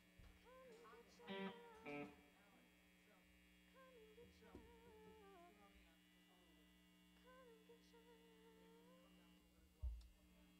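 Steady electrical hum from the band's amplified rig, with faint, wavering melodic notes noodled quietly on an instrument between songs. Two short, louder notes sound about a second and a half and two seconds in.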